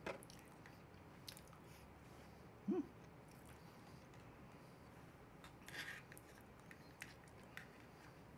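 Quiet eating sounds: a metal spoon clicking and scraping against a small plastic tub a few times, with chewing. About three seconds in comes a brief hummed sound from the eater.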